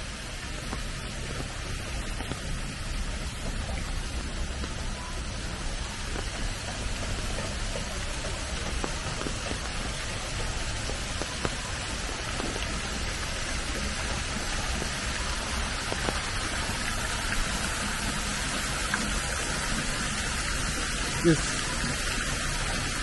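Steady rain falling on wet stone paving, mixed with the splashing of water cascading down a stone wall fountain, growing a little louder in the second half.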